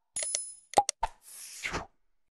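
Subscribe-animation sound effects: quick mouse clicks with a short, high bell-like ding near the start, a pop with two more clicks just before the one-second mark, then a brief whoosh in the second half.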